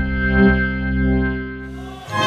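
Logo intro music: one sustained chord held with a sweeping, swirling effect on it, fading away toward the end.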